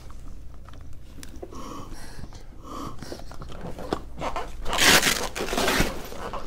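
Plastic medical packaging being handled and unwrapped: scattered rustles at first, then a loud, longer burst of rustling about a second before the end.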